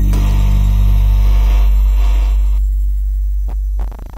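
Experimental lo-fi electronic music: a loud, deep steady drone built of layered sustained low tones with a hissy upper layer. The upper layer cuts out about two-thirds of the way in, leaving the low drone. A couple of sharp clicks come near the end as the sound begins to fade.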